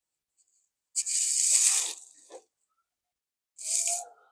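Two bursts of scuffing, rustling noise as a person moves about: the first about a second in and lasting about a second, the second shorter, near the end.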